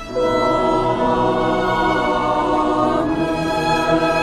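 Children's choir singing, a new phrase coming in after a brief dip right at the start.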